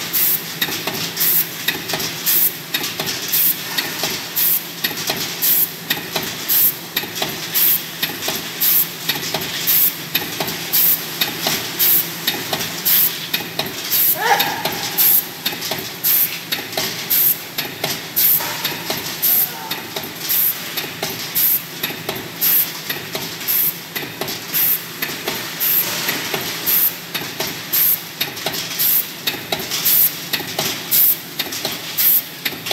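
Aluminium foil food-container making machine running, with an even high ticking a little under twice a second and a steady low hum, over a constant crinkly clatter of foil trays being handled and stacked. A short rising squeal cuts through about halfway.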